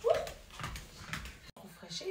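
A short rising vocal sound from a woman right at the start, then fainter scattered noises, all cut off abruptly about a second and a half in.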